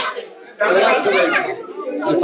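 People talking over one another, with a brief lull in the first half-second.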